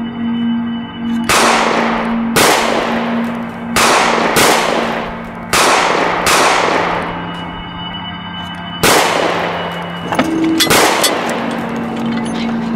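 Gunshots, about nine, fired singly at uneven gaps of one to two seconds, each with a long echoing tail, with a quick pair near the end, over a steady background music bed.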